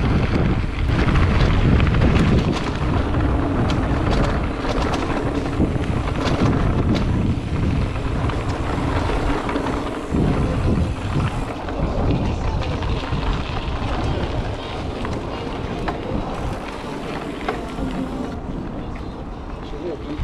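Wind buffeting a handlebar-mounted action-camera microphone as a mountain bike rolls over a gravel track, with tyre crunch and frequent small rattles and knocks from the bike.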